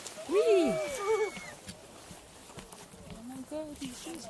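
Human voices: a drawn-out call that rises and falls in pitch, about half a second in, with a second voice overlapping, then quieter talk near the end.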